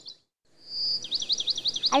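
Bird chirping: a rapid run of short, high, falling chirps, about eight a second, led in by one held whistled note. Near the start the sound drops out to dead silence for a moment.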